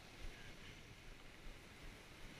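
Faint, steady wash of river water with a low, uneven rumble of wind on the microphone.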